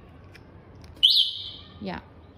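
Electric-scooter anti-theft alarm unit giving a loud electronic chirp in answer to a button press on its wireless remote. The chirp is a quick rising whistle, held high for most of a second, then dropping sharply at the end.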